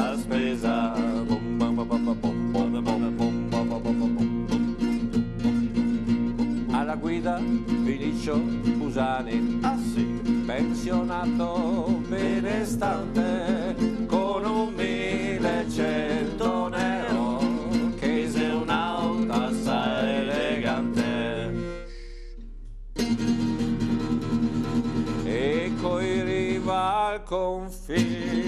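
Acoustic guitar strummed live, with a man singing along in a voice that wavers with vibrato. The playing breaks off for about a second near the end, then picks up again.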